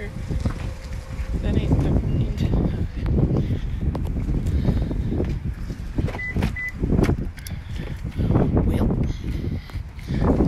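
Wind buffeting the phone's microphone, a heavy low rumble throughout, with a woman's voice talking under it.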